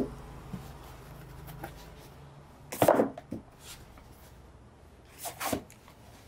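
Books being pushed and slid into place on a bookshelf: a knock at the start, then two short sliding scrapes about three seconds and five and a half seconds in. A low hum stops about two seconds in.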